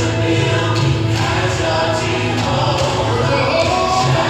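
Gospel music with a choir singing over a steady bass line.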